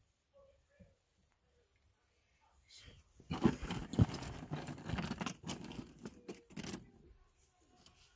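Close handling noise: rustling, scraping and knocking as things are moved about against the phone's microphone, starting about three seconds in and dying away near seven seconds.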